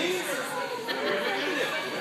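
Indistinct chatter of many overlapping voices in a large, echoing hall.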